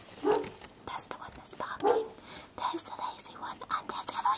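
Soft whispering close to the microphone, with two short dog barks about a second and a half apart and fainter yelps after them.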